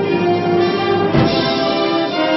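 A concert wind band playing sustained brass chords, with a single percussion hit about a second in.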